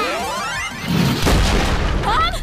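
Cartoon sound effects for a magic blast: a rising sweep, then a booming explosion with a low rumble from about a second in, over music.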